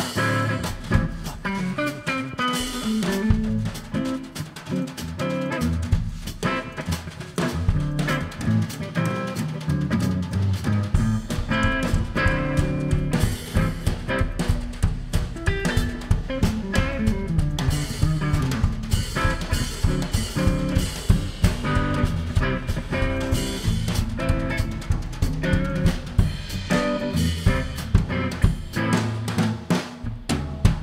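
Drum kit and electric guitar playing a jazzy groove together, the guitar's lines over a steady kick and snare. The drummer works hi-hat splashes into the beat to give it a bit of air.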